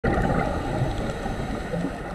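Underwater ambience picked up by a diver's camera: a steady muffled rumble with faint scattered crackling.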